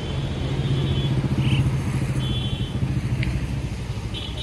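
A motor vehicle engine passing close by. Its low, pulsing running sound grows to its loudest about one to two seconds in, then eases away.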